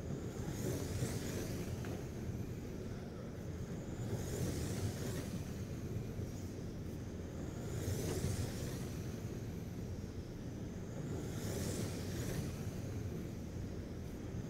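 A pack of Slash-class RC racing trucks lapping an indoor oval. Their motors whine high and swell as the pack passes about every three and a half to four seconds, four passes in all, over a steady low rumble of running cars.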